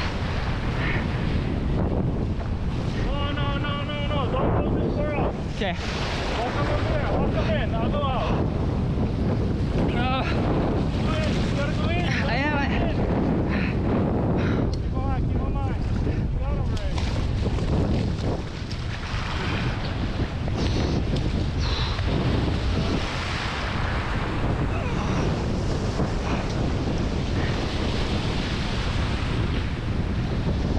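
Surf breaking and washing along a rocky shoreline while steady wind buffets the microphone.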